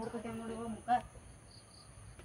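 Steady high-pitched drone of insects, as of crickets in garden vegetation, with a woman's voice over it in the first second.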